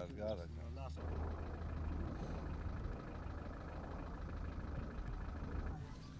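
A steady engine rumble that starts about a second in and cuts off just before the end, after a brief voice at the start.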